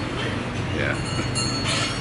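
Steady low mechanical hum and rumble in the background, with a short spoken "yeah" about a second in.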